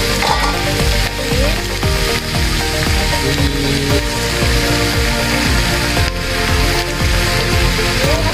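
Background music playing over the steady sizzle of chicken feet and heads frying in a pan.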